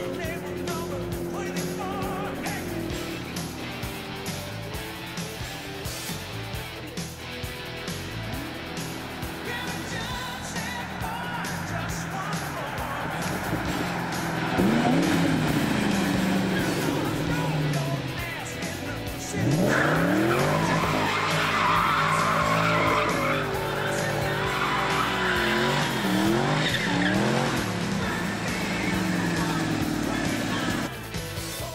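2004 Ford Mustang SVT Cobra's supercharged 4.6-litre V8, breathing through a Borla cat-back exhaust, revving hard during a burnout with tires squealing as the rear tires spin and smoke. The revs rise and fall several times and get louder from about halfway, under background music.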